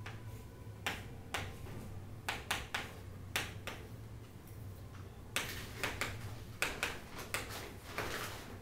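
Chalk tapping and scratching on a chalkboard as letters and symbols are written: a string of short, irregular clicks, some coming in quick clusters.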